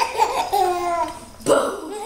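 Baby laughing in about three high-pitched bursts.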